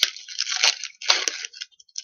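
Foil wrapper of a Magic: The Gathering booster pack crinkling and tearing open in the hands, in a few short rustling bursts within the first second and a half.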